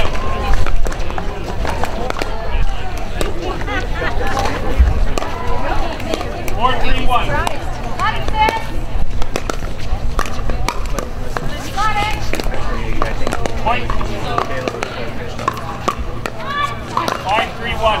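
Pickleball rally: paddles strike the plastic ball in a string of sharp pops, some of them the ball bouncing on the hard court, over voices of players and onlookers.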